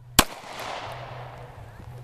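A single shot from a Ruger 9mm pistol, about a fifth of a second in, its report echoing and dying away over about a second and a half.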